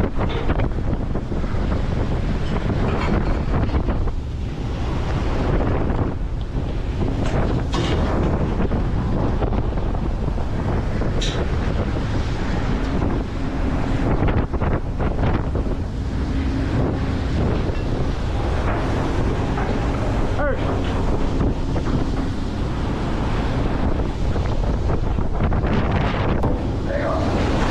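Wind buffeting the microphone over waves surging and breaking against the hull of a longline fishing boat at sea, with a steady low rumble from the vessel. Occasional short knocks from the hauling gear at the rail.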